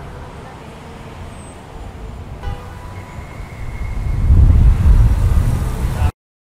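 City street traffic: a steady road rumble that swells loud from about four seconds in as a vehicle passes close.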